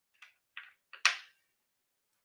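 About four short clicks and knocks in quick succession, the last the loudest with a brief ring-off: handling noise from a guitar being picked up and plugged in.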